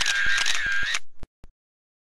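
Camera shutter sound effect: a rapid run of shutter clicks over a wavering motor-drive whir, with a couple of last clicks before it cuts off about a second and a half in.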